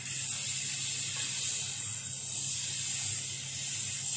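LXSHOW hybrid laser cutter's CO2 cutting head cutting thin wood sheet: a steady high hiss of air blowing through the nozzle, with a low machine hum beneath it.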